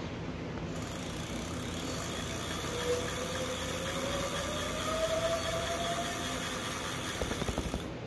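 Electric bike hub motor spinning the wheel under thumb throttle. A steady hiss starts just under a second in, and from about three seconds in a whine rises in pitch as the wheel speeds up, then the sound cuts off near the end.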